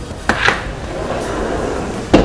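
Two short knocks close together about half a second in, as a door is opened, followed by steady noise.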